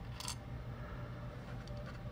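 Faint small clicks and a brief scrape of hands handling a plastic scale model tank, over a steady low electrical hum.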